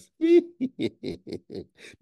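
A man laughing: one loud high-pitched whoop, then a quick run of short chuckles that fade away.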